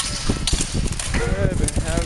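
Onlookers' voices calling out over a steady noisy background hiss, with a short sharp knock about half a second in.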